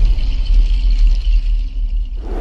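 Deep, steady bass rumble with a hiss above it: the sound design of an animated channel intro.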